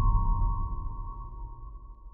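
Fading tail of a horror trailer's closing sound design: a deep low rumble dying away under a steady high tone, which splits into two close pitches as both fade out.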